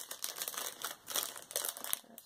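Plastic packaging crinkling irregularly as it is handled.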